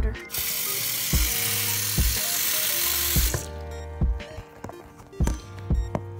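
Water running from a bathroom sink tap for about three seconds, starting just after the start and shutting off abruptly. Background music with a steady beat plays under and after it.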